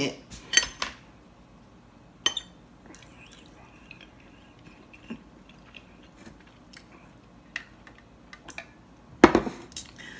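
Light, scattered clinks and clicks of cutlery against a plate while someone eats, with a louder thump near the end.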